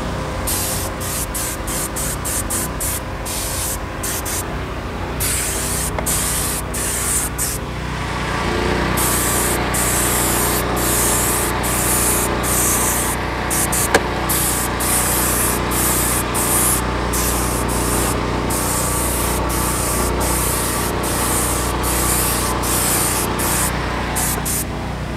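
Air-powered detail gun, run at about 45 psi, spraying in hissing bursts: many short bursts at first, then longer ones from about a third of the way in. A steady low hum runs underneath.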